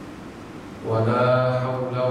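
A man's voice chanting an Arabic opening praise, starting about a second in with a long, steady held note.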